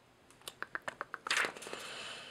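Paper of a paperback book being handled: a quick run of small clicks and crinkles, then a longer rustle of the pages about halfway in.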